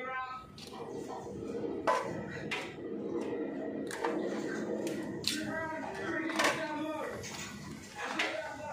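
A few sharp clicks of a plastic cable tie being worked and snipped with cutters inside a metal breaker panel, over voices talking in the background.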